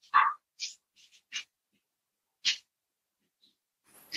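A man coughing and sniffing in a string of short separate bursts. The first one, just after the start, is the loudest.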